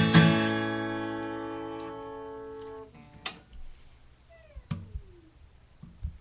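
Acoustic guitar's last strummed chord ringing out and fading for nearly three seconds before it is damped. Then come a few quiet knocks and handling noises, with a short falling whine about halfway through.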